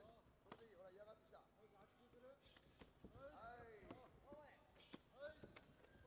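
Faint voices calling out, loudest about halfway through, over several sharp thuds of full-contact karate kicks and punches landing.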